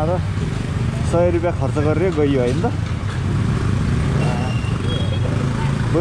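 Yamaha FZ 15's single-cylinder engine running steadily at low revs in slow traffic, heard from the rider's seat. A voice speaks over it from about one second in and briefly again near the end.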